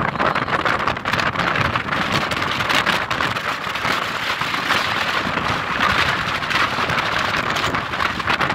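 Wind blowing across the phone's microphone: a steady, loud rushing hiss full of crackles.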